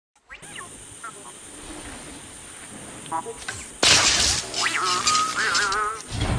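Sound effects of an animated channel intro: scattered short chirps over a soft background, then about four seconds in a loud whooshing burst followed by wavering, warbling beeps.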